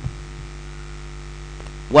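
Steady electrical mains hum in the recording: a few constant low tones over a faint hiss. There is a brief click right at the start.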